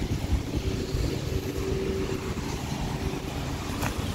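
Honda Ridgeline's 3.5-litre V6 idling, a steady low hum, with a short click near the end.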